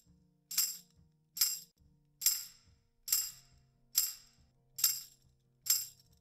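A tambourine track played on its own, dry and unprocessed. Seven bright jingle hits come evenly, about one every 0.85 seconds, and each rings out briefly.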